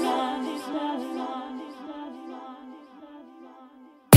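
Background pop love song, its sung vocal and backing fading out steadily to almost nothing, with no bass.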